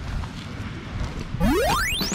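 A rising electronic sweep tone, an edited-in transition sound effect, climbs steeply in pitch over less than a second, starting about a second and a half in. Before it there is only low background rumble.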